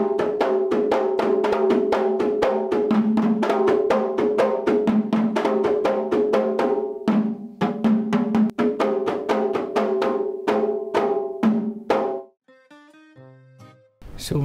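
Three kompang, Malay hand-held frame drums, beaten with the hand in three interlocking parts (melalu, menyelang and meningkah). They make a fast, even stream of strokes that alternate between a higher open tone and a lower muted tone, and they stop suddenly about twelve seconds in.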